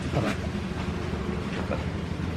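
An engine running steadily with a low, even drone.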